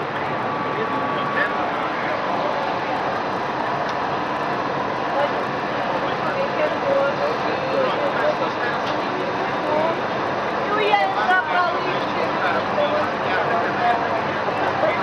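CP 2000 series electric multiple unit running, heard through an open carriage window as a steady rush of wind and track noise that holds at one level, with voices over it.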